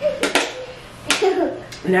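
Short bursts of indistinct voices, a toddler's among them, with a few sharp clicks or smacks in between.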